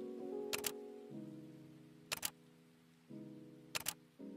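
Slow background piano music with held chords, under a camera shutter clicking three times, each a quick double click, about a second and a half apart.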